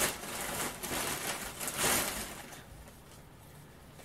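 A gift bag rustling as a hand rummages in it and pulls out clothes pegs, loudest about two seconds in and then dying away.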